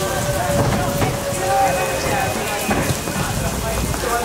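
Steady rain hiss with a low rumble, with a few short distant shouts over it.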